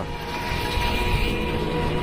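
Steady engine noise of a nearby motor vehicle running, with a faint constant whine over a low rumble.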